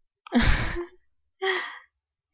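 A person's breathy sighs: two short exhalations, the first longer and louder.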